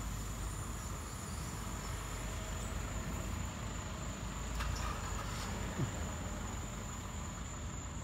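Steady low rumble of an idling box truck engine, with insects chirping in one continuous high tone.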